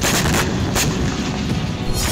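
Explosion-style sound effect with a sudden boom and a rumble that runs on, with two sharp cracks about half a second and a second in, over dramatic background music.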